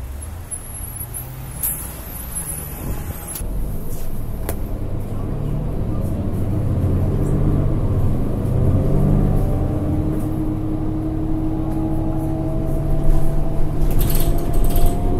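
Heard from inside a 2010 New Flyer D40LF city bus: its Cummins ISL9 inline-six diesel pulls the bus away and accelerates, growing steadily louder, with engine and Allison transmission whine rising in pitch over the last several seconds. In the first few seconds there are short hisses and clicks as the bus stands at the stop.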